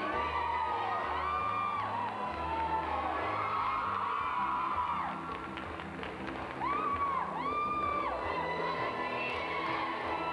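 Music for a stage dance number, with a crowd cheering and high voices whooping over it several times, loudest about two-thirds of the way through.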